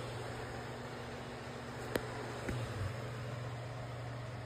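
Steady low hum over faint room hiss, with a sharp click about two seconds in and a softer click half a second later.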